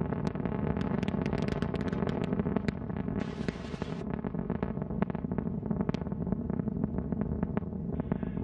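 Antares rocket's first-stage engines in flight, heard from the ground: a steady low rumble shot through with sharp crackles, with a brief hiss about three seconds in.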